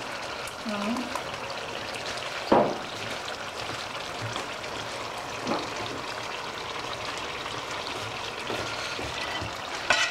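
Chicken masala frying in a steel pot with a steady sizzle while green herb paste is scraped in with a metal spatula. A sharp knock against the pot comes about two and a half seconds in, and a lighter one about five and a half seconds in.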